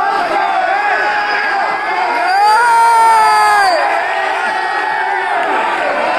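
Audience shouting and cheering for bodybuilders posing on stage, many voices overlapping, with one long drawn-out shout about two and a half seconds in that rises and then falls away.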